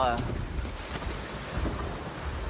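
Sea rushing and washing around a sailboat's hull in a heavy swell, with wind buffeting the microphone in low, uneven rumbles.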